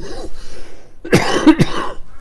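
A man coughing close to the microphone: a breathy rasp, then a quick run of coughs about a second in.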